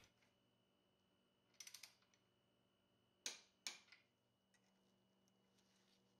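Near silence with a few faint clicks: a quick run of small ticks, then two sharper clicks about half a second apart.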